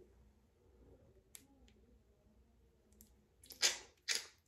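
Handling of a twist-up cushion lip tint pen: a few faint clicks, then a short louder scrape-like burst near the end, otherwise near quiet.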